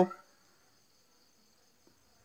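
A spoken word trails off just after the start, then near silence with only a faint, steady, high-pitched drone in the background.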